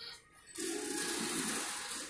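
A loud, steady rushing noise like running water sets in suddenly about half a second in.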